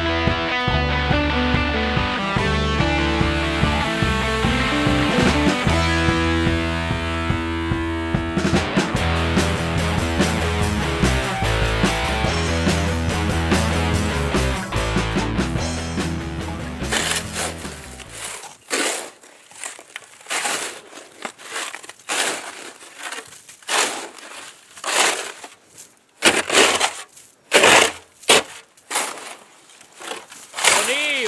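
Rock guitar music for about the first eighteen seconds, fading out. Then irregular scrapes and swishes of a long-handled snow tool clearing heavy snow off a car, each stroke short with gaps between.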